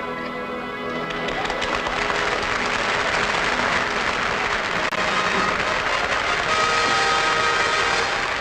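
Band music with sustained chords, and audience applause building up over it from about a second in.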